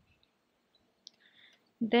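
Near quiet, with a single faint click about a second in and a brief faint hiss after it. A voice starts speaking near the end.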